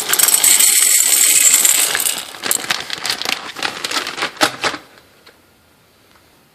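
Dry beans pouring from a bag through a stainless steel canning funnel into a glass canning jar: a dense rattling rush that thins after about two seconds into scattered clicks of single beans, and stops about five seconds in.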